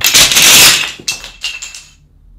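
A tall tower of thin wooden building planks collapsing onto a table: a loud clatter of wood for about a second, then a few last planks knocking down separately before it stops.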